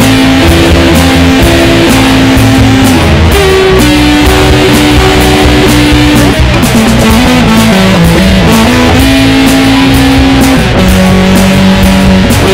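Electric guitar solo in a punk-rock recording: long held lead notes, sliding down in pitch in the middle, over bass and drums.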